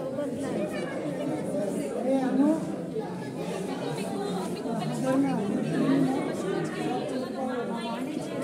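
Indistinct chatter of several people talking at once, voices overlapping with no pause.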